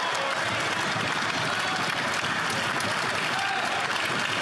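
A roomful of seated parliamentarians applauding, with voices mixed in.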